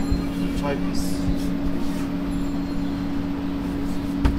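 A steady low machine hum, with faint voices in the background.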